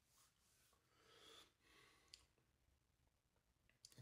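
Near silence, with a person's faint breathing after a sip and a single small click about two seconds in.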